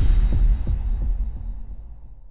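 Intro sound-effect bass hit: a deep boom whose low rumble pulses a few times in the first second, then fades away.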